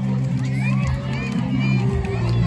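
Crowd of parents and young children chattering and cheering, with children's high voices calling out, over music with steady sustained bass notes.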